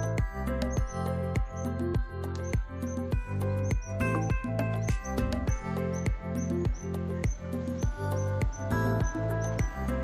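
Background music with a steady beat over a deep bass line, with short high chirping notes falling in time with the beat.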